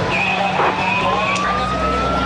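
Emergency vehicle siren, from the fire engine in the footage, wailing in one slow sweep that dips and then climbs again, with a second, higher steady tone held for about a second near the start.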